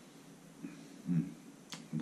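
Quiet room with a man's short murmured 'hmm' about a second in, then a single sharp click near the end.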